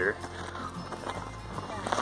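Footsteps crunching in packed snow while walking uphill, with background music.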